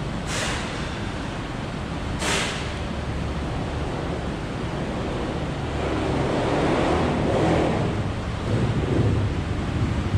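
Steady low rumble and hiss of background noise in a large warehouse, with two brief hisses about half a second and two seconds in, and a swell in the rumble a little past the middle.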